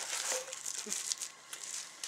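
Bubble wrap crinkling as it is handled, in small irregular crackles that fade out in the second half.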